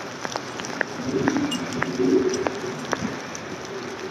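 Footsteps on a conifer forest floor, with dry twigs and needles crackling underfoot in irregular sharp clicks.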